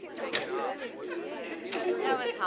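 A group of young people talking at once as they spill out of a classroom: overlapping, indistinct chatter that grows louder.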